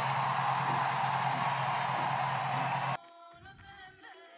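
Loud steady cheering, an even roar of noise over the music, that cuts off suddenly about three seconds in; after it the song plays quietly.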